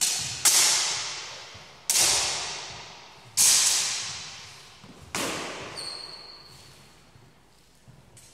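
Steel longsword blades (feders) clashing five times, the first two in quick succession, each strike ringing out and fading over a second or two in a large echoing hall. A thin high ring from a blade hangs on briefly after the last clash.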